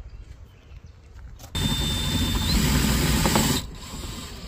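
Cordless drill/driver driving a metal roofing screw through a clamp into ribbed sheet-metal siding. It runs for about two seconds, starting about a second and a half in. Its high whine steps up in pitch partway through, then it stops suddenly.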